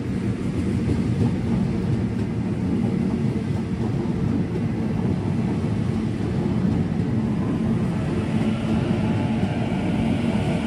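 Sydney Trains double-deck electric train standing at a platform, its onboard equipment giving a steady low hum with a few held low tones.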